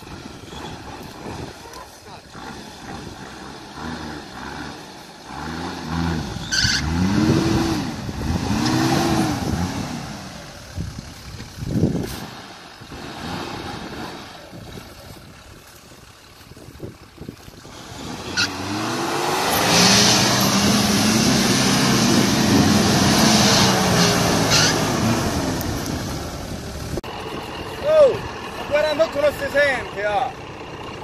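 Off-road 4x4 engine revving hard as the vehicle claws up a steep, rutted slope. Two short revs rise and fall, then a longer, louder pull under load builds and falls away.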